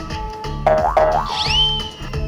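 Edited-in background music with a repeating bass beat. Two short arching pitch bends, a cartoon-style sound effect, come about two-thirds of a second in, followed by a quick rising whistle-like glide.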